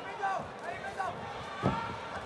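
Voices calling out around a kickboxing ring, with one sharp thud of a blow landing about one and a half seconds in.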